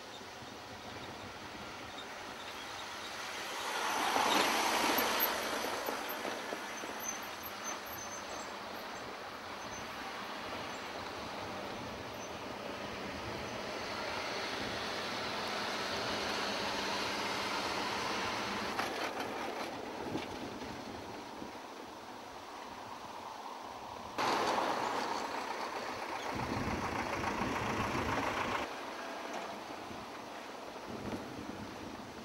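Vehicles driving past on a broken, potholed asphalt road: engine and tyre noise swells as each one passes, including a minibus. A louder stretch near the end starts and stops abruptly.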